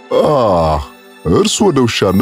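A voice gives a drawn-out "Aah!" that falls in pitch, then speech starts a little after a second in, over background music.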